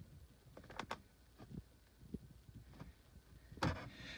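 Faint handling sounds of a plastic oil-stabilizer bottle being poured into a manual transmission through its open shifter hole: a few scattered light clicks and taps, with a louder knock shortly before the end.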